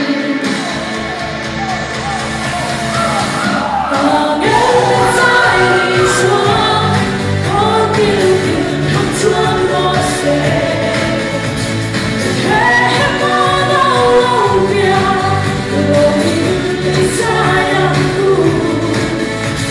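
A woman sings into a microphone over a pop-style accompaniment. It opens on a held, wavering note with a rising sweep. About four seconds in the full accompaniment with a steady beat comes in under her melody.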